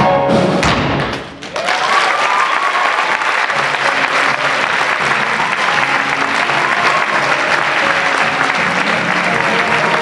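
A theatre band ends a musical number with a few final beats in the first second; then an audience applauds, with the band still playing softly underneath.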